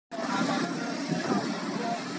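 Busy street traffic at an intersection, vehicles passing steadily, with people's voices mixed in.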